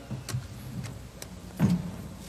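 Microphone handling noise: a few sharp clicks and one louder low thump near the end, over a steady low hum from the hall's sound system.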